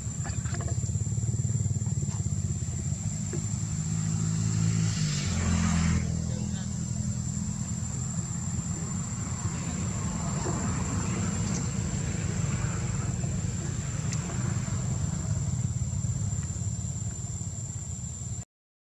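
A motor vehicle engine running nearby, its pitch stepping up about five seconds in. A steady high-pitched whine sits above it.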